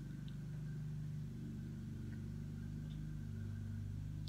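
A lawn mower engine running steadily in the background, heard as a low hum whose pitch shifts slightly about a second in.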